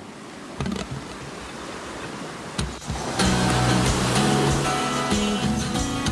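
Steady noise of surf washing onto a beach, then music with a steady bass line comes in about three seconds in and carries on over the surf.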